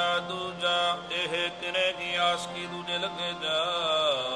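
Harmonium playing a short instrumental passage of steady held notes between sung lines of Sikh kirtan, with tabla accompanying.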